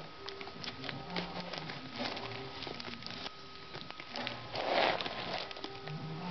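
Handling noise from a handbag woven of folded cigarette wrappers being moved about: scattered light clicks and crinkles, with a longer rustle about four and a half seconds in.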